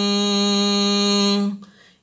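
A man reciting Quranic Arabic holds one long, steady nasal note on a single pitch, the ghunnah at the end of "baqaratun". It stops about a second and a half in.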